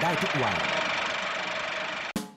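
A voice reading out a TV age-rating notice, trailing off in the first second, over a steady hissy hum that runs on under it.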